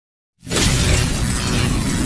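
Intro sound effect for an animated logo: after a moment of silence, a loud, dense rush of noise starts suddenly about half a second in and keeps going, with a deep rumble under it.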